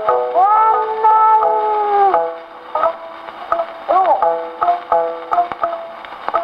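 An acoustically recorded 1910s–1930s Nitto 78 of ukiyobushi, played on an acoustic Victor Victrola gramophone at 80 rpm, with a narrow, old-record sound. A woman's voice holds one long wavering sung note for about two seconds, then shamisen plucks carry on alone.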